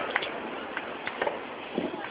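Fireworks crackling: about half a dozen small, sharp pops scattered over two seconds, much quieter than the big bursts.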